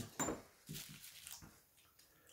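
Light handling noise from a smartphone repair bench: a short clack about a quarter second in, then a few soft rustles as the phone frame is lifted off the bubble-wrap mat.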